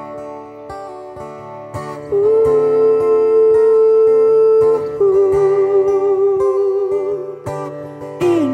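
Acoustic guitar picked in a steady rhythm under a wordless sung melody: a long held note starting about two seconds in, then a second, slightly lower held note with vibrato.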